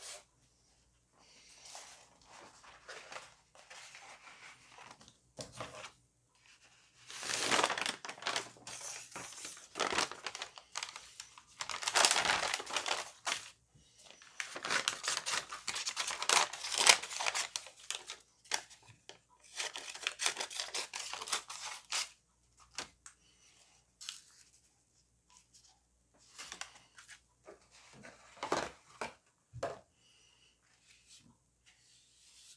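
Sheets of painted paper being handled, rustled and torn in irregular bursts, the loudest run in the middle of the stretch.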